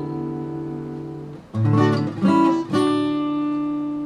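Mahogany acoustic guitar strummed with a pick: a chord rings out and fades, then about a second and a half in come three quick strums, and the last chord is left ringing.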